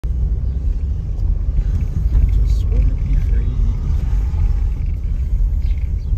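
Low, steady rumble of a car driving slowly, heard from inside the cabin, with faint voices partway through.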